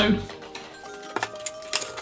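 Background music with steady held notes, over which a cardboard box being folded by hand gives a few sharp clicks and taps; a short groan of effort at the very start.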